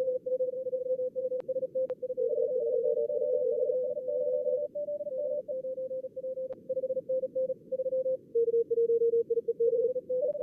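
Simulated contest Morse code (CW) from a logging program's practice mode: fast on-off code tones around 500–600 Hz over a faint hiss of band noise, at times two stations sending at once at slightly different pitches. A few sharp clicks cut across the code.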